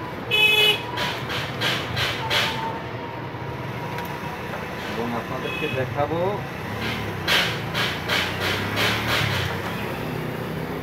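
A short vehicle horn toot about half a second in, the loudest thing heard, over a steady background hum. Then a run of light clicks and knocks as the plastic folding LED bulb is handled, denser near the end.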